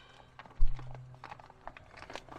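A dull thump a little over half a second in, followed by scattered light clicks and rustles as bags of pool filter glass are handled on the ground.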